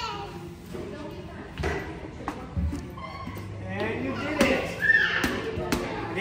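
A small play basketball thudding a few times as it bounces on a hard floor, mixed with voices and a few sharp knocks.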